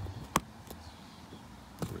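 A single sharp click about a third of a second in, then faint handling ticks and another small click near the end, as hands tuck a KTM tank bag's release strap into its fitting.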